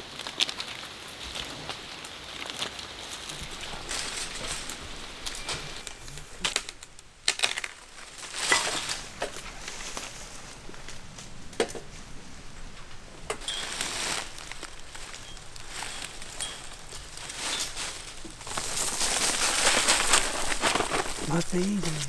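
Scattered sharp clicks and knocks over rustling as a hunter climbs a tree and hangs a metal hang-on tree stand, with a louder rustling stretch near the end.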